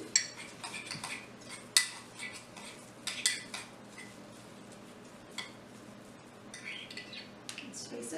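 A spoon clinking and scraping against a mug while stirring hot cereal, in scattered irregular clicks, the sharpest about two seconds and three seconds in, with a run of lighter scrapes near the end.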